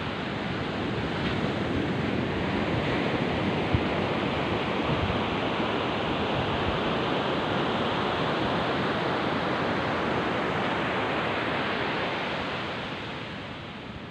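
Wind on a clip-on microphone mixed with small surf breaking on a sandy beach: a steady rushing noise that eases off near the end.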